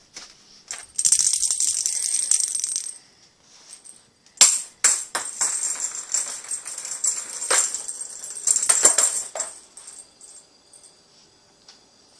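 Rattling and rustling in two long bursts, with a few sharp clicks, from a cat scuffling with a toy on the floor.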